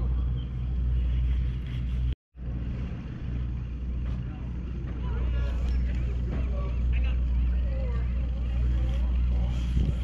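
A boat engine running steadily at idle, a low even drone. It cuts out for a moment about two seconds in, then carries on.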